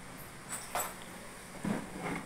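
A few faint clicks and knocks as the transparent plastic recovery tank of a wet-extraction cleaner is handled, in a quiet room.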